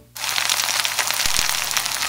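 Sausages sizzling in a cast iron skillet: a steady frying hiss that starts abruptly a moment in, with a couple of soft low thumps about halfway.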